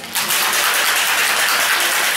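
Ice cubes rattling rapidly inside a metal cocktail shaker shaken hard by hand, a dense, even clatter that starts just after the beginning. The ice is chilling and mixing a shaken cocktail.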